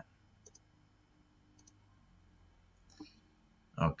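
A few faint computer mouse clicks over near silence, the last and loudest about three seconds in as the presentation slide is advanced.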